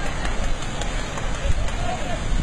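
Ocean surf washing over lava rock and pouring into a rock pool, a steady rush of water, with wind rumbling on the microphone.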